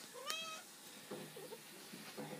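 Domestic cat meowing once: a short call that rises in pitch, about a quarter second in.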